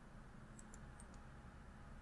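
Near silence with a few faint computer mouse clicks, scattered through the first half.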